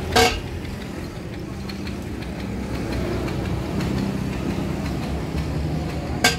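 A truck engine idling steadily, with a single sharp knock just after the start.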